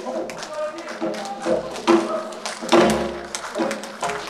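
Gayageum strings plucked, with strokes on a buk barrel drum and a voice over them. The loudest drum hits fall about two and three seconds in.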